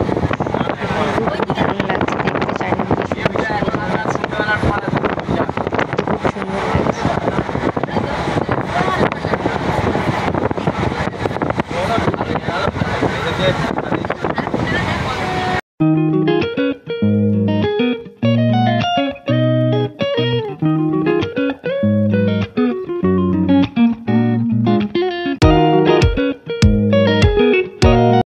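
A moving train heard from inside a passenger carriage: a steady, loud rumble and rush, with voices mixed in. About halfway through, this cuts off abruptly and instrumental music with a plucked, guitar-like melody takes over, with a few sharp beats near the end.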